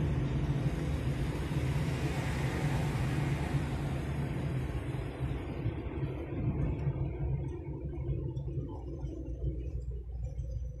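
Road noise inside a car moving at motorway speed: a steady low rumble from the engine and tyres. Over the last few seconds the higher tyre and wind hiss fades.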